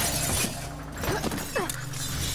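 Glass shattering and breaking in a film fight, loudest in the first half second, then dying away into smaller debris sounds.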